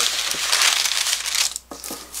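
Parchment baking paper crinkling as it is lifted and folded inward, with crisp dried green onion flakes sliding across it. The rustling stops about one and a half seconds in.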